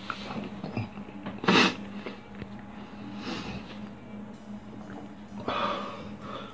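A man breathing hard and sniffing from the burn of a just-eaten habanero pepper, with one loud, sharp blow of breath about a second and a half in and shorter hissing breaths later.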